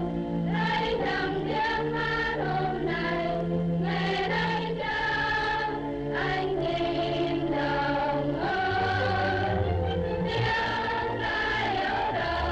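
Choral music: a choir singing held notes that change every second or so over a low bass line.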